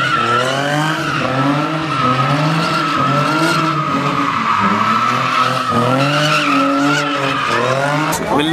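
Car drifting: tyres squealing steadily while the engine revs up and down.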